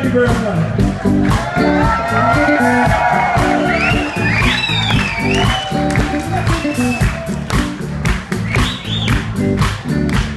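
Live blues-soul band playing a groove: a steady bass line and drum beat, with a voice gliding high over the band in the middle.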